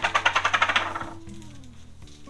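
A rapid run of light, sharp clicks or rattles, about a dozen a second, fading out about a second in, over quiet background music.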